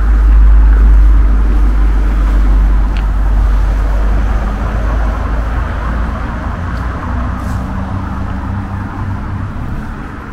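Outdoor street background dominated by a deep rumble that is loudest about half a second in and slowly fades over the following seconds.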